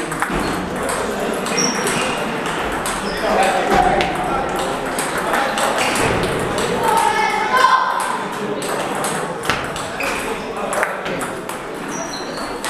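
Table tennis balls clicking off paddles and the table in a rally, with the clicks of play at many other tables mixed in, in a large echoing hall. Voices are heard in the background.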